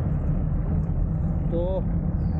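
Steady low rumble of wind and road noise while riding a Hero Lectro electric fat bike up a steep asphalt climb in first gear.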